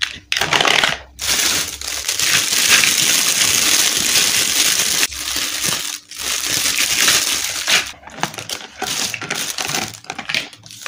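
Clear plastic bag full of small plastic toy building bricks being handled, the bag crinkling as the bricks rattle inside, in long loud spells with a short break about six seconds in. Scattered light plastic clicks follow near the end.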